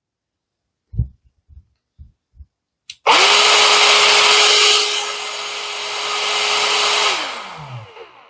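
Parkside PALP 20 A1 cordless air pump starting suddenly about three seconds in and running flat out, a loud rush of air with a steady whine over it, around 99 dB on a sound level meter held beside it. It is switched off about seven seconds in and winds down with a falling whine. A few light clicks of the pump being handled come before it starts.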